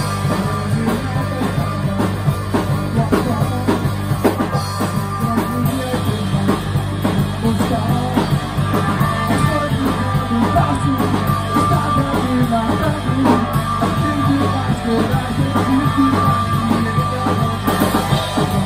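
A rock trio playing live: a semi-hollow electric guitar, an electric bass and a drum kit, with a driving beat.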